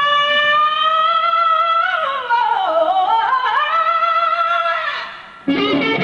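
A female rock singer holds one long high note unaccompanied, sliding down in pitch and back up before it fades. An electric guitar answers near the end.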